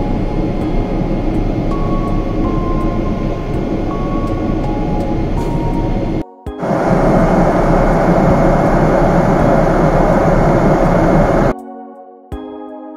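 Steady roar of a Boeing 777 airliner's engines and airflow heard inside the cabin while cruising. A brief break about six seconds in is followed by louder cabin noise, which gives way to music near the end.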